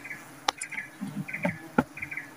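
Giant honey bees (Apis dorsata) buzzing around their comb, the buzz coming and going as bees fly close. Two sharp clicks cut in, about half a second in and near the end.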